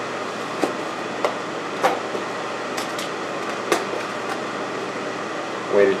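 Light clicks and taps from handling foam-board panels and a roll of tape, about half a dozen spread out, over a steady room hum.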